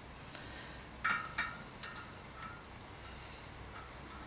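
Light metallic clinks of thin cone spanners being fitted onto a bicycle hub's cone and locknut: two clearer clinks about a second in, then a few faint ticks.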